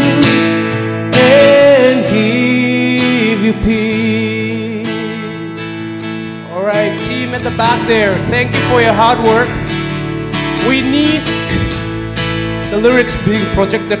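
Live band playing a slow worship song: acoustic guitar with keyboard and bass, joined by singers' voices. The music softens briefly about halfway through, then builds again as the voices come in.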